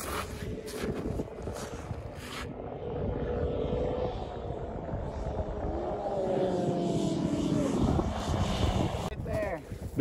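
Footsteps crunching on snow-covered ice for the first couple of seconds, then a distant three-cylinder two-stroke snowmobile running across a frozen lake, its engine pitch climbing steadily as it accelerates and falling away about two seconds before the end.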